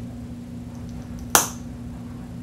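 Applicator wand of a NYX Fat Oil lip drip tube pulled out of the tube with a single sharp pop about a second and a half in, a fun sound.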